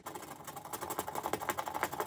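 A scratch-off sticker being scratched off in quick, rapid back-and-forth strokes.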